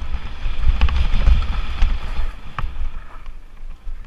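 Lapierre Spicy 327 mountain bike descending a rocky dirt trail, heard from a camera on the bike or rider: wind buffeting the microphone over the rolling noise of the tyres on gravel and rock, with a few sharp knocks and rattles as the bike hits bumps. The rush is loudest from about one to two seconds in and eases toward the end.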